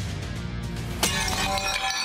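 Background music with a sharp shattering crash about a second in, its bright high ring carrying on afterwards.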